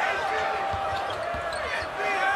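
Basketball being dribbled on a hardwood court: a run of low, short bounces, with high squeaks from players' shoes and arena crowd noise behind.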